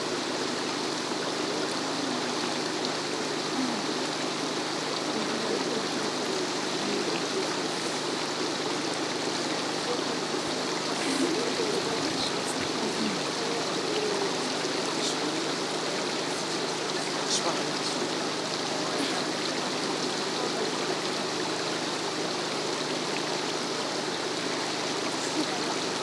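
Water of a spring running steadily, an even rushing that does not change.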